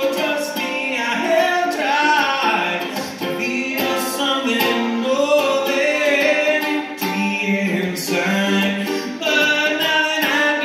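A man singing a melodic line with no clear words, accompanied by a strummed ukulele.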